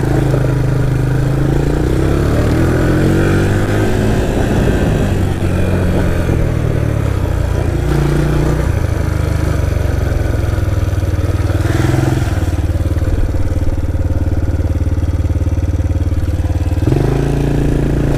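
Yamaha Raptor 700R quad's single-cylinder engine running under way. Its note rises and falls in several steps as the rider works the throttle and gears.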